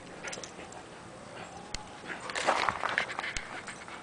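Dogs play-wrestling on grass, with a short, louder burst of dog vocalising and scuffling a little over two seconds in.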